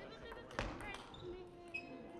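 Table tennis ball clicking off bat and table: one sharp strike a little over half a second in, then a few lighter clicks, with voices chattering in the echoing hall.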